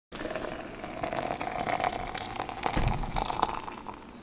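Hot water poured from a glass electric kettle into a glass French press onto ground coffee: a continuous splashing pour.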